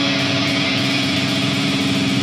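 Metal band playing live: distorted electric guitar holding a sustained low riff over fast drumming.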